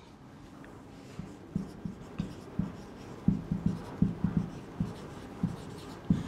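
Marker pen writing on a whiteboard: a run of short, irregular strokes and taps as words are written, starting about a second in and coming faster in the second half.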